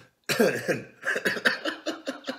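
A man coughing in a string of short coughs, mixed with laughter.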